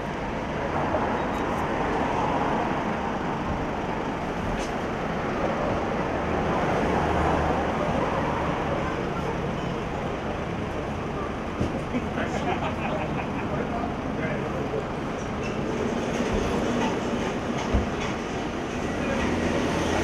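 A car engine idling close by under a steady street noise, with indistinct voices of a crowd around it.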